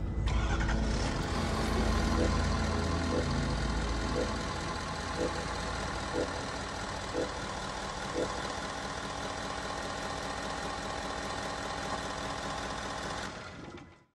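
Sound effect of a vehicle engine starting and then idling steadily, with a short tone about once a second for several seconds; it fades out near the end.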